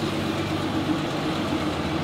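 West Coast Trail Express shuttle bus driving slowly past along a street, its engine running with a steady hum.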